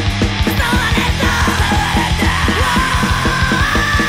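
Hardcore punk band playing: a fast, even drum beat and distorted guitars under shouted vocals.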